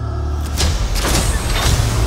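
Trailer sound design for a deep-sea descent: a heavy, steady low rumble under several hissing surges of noise, like air or water rushing.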